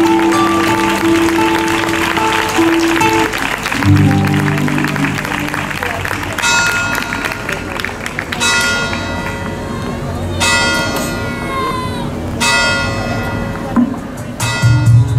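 Music with long held notes, then from about six seconds in bells ringing in four chiming peals, each lasting a second or two.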